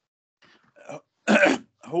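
A person's short throat-clearing cough a little past the middle, after a near-silent pause, heard through a video-call connection; speech starts again just before the end.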